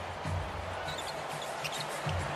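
Basketball being dribbled on a hardwood court: a series of low bounces.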